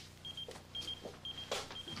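Electronic pager beeping: four short, high, steady-pitched beeps, about two a second. A brief noise about one and a half seconds in.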